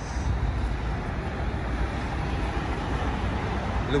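City road traffic: a steady, low rumble of cars on a busy street.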